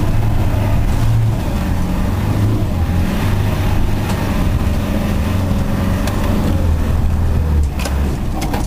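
Land Rover Defender 90's engine running steadily at low revs, heard from inside the cab as it drives a rough green lane. The engine note eases off a little near the end.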